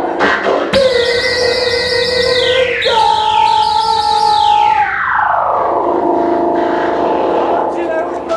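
Electronic noise music: a steady synthesizer drone breaks into loud held tones about a second in, with fast stepped figures and pitch sweeps falling from high to low, the longest gliding down in the middle before the drone settles back.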